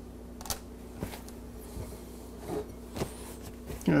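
Quiet kitchen room tone with a steady low hum, broken by a few soft, short clicks and taps about half a second, one second, two and a half and three seconds in.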